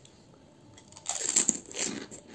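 A crisp, hollow puchka (pani puri) shell, dipped in its spiced water, crunching in the mouth as it is bitten and chewed. The sound comes in two loud crunches starting about a second in.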